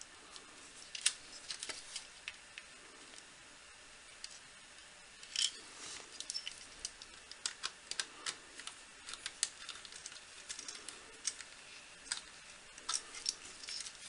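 Small, irregular clicks and taps from hands working fan wires into the screw terminal of a 3D-printer control board, coming in scattered clusters.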